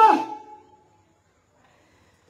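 A man's lecturing voice ends its last word early on and fades out within the first second, followed by near silence.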